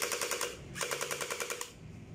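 Electric gel blaster firing full-auto in two short bursts of rapid, evenly spaced clacks, about a dozen a second, with the motor's steady whine under each burst.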